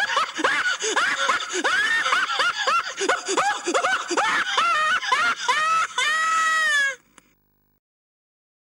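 A man's high-pitched hysterical laughter, a quick run of rising-and-falling cackles, ending in one long held shriek that cuts off suddenly about seven seconds in.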